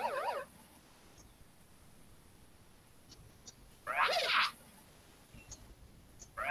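A warbling electronic quiz-game tone, marking a correct answer, trails off at the start, followed by a few faint clicks. About four seconds in comes a short pitched sound, about half a second long, whose pitch bends downward.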